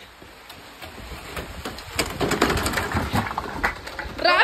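Rain falling, heard as a haze of scattered taps and patter that gets louder about halfway in, with some rustling.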